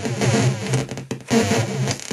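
Home-built mini modular noise synth built around 4093 Schmitt-trigger NAND and 4077 XNOR CMOS chips, giving out harsh, chaotic square-wave noise over a stuttering, stepping low buzz. The sound thins out briefly a little past the middle and then comes back at full strength.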